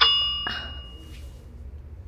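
A single bright metallic ding, like a struck bell, that rings and fades away over about a second and a half, with a fainter second hit about half a second in.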